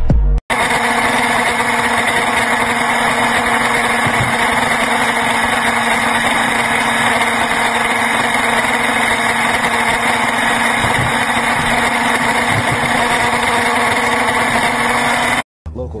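Steady engine, wind and road noise of a vehicle travelling at highway speed, starting suddenly about half a second in and cutting off abruptly near the end.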